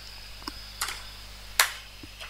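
Three sharp clicks of computer keys being pressed, the loudest about one and a half seconds in.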